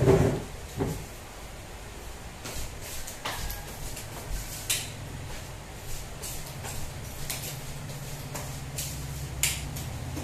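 Scattered light knocks and clicks of a person moving about a tiled room, with a steady low hum that comes in about halfway.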